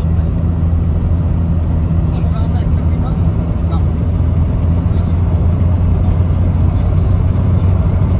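Steady low engine and road drone heard from inside a moving vehicle travelling at an even speed.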